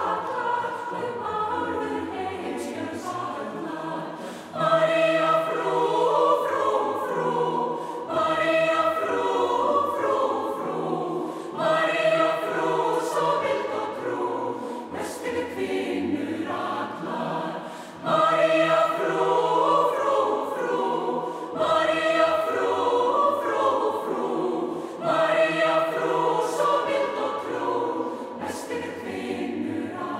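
Mixed choir of women's and men's voices singing unaccompanied in Icelandic, in phrases a few seconds long, each new phrase swelling in louder, with a marked rise about four seconds in and again near eighteen seconds.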